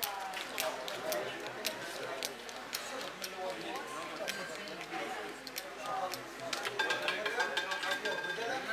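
Background murmur of voices around a casino roulette table, broken by frequent sharp clicks of plastic gaming chips being handled and stacked.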